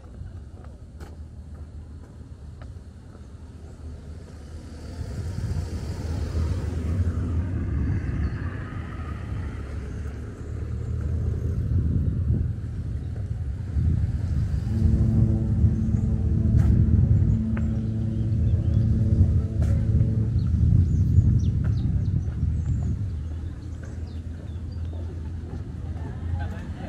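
Outdoor street ambience: a low, uneven rumble of road traffic, with a vehicle engine's steady hum for several seconds past the middle.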